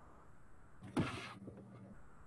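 A single short thump about a second in, followed by a brief noisy rush, over faint room noise with an intermittent low hum.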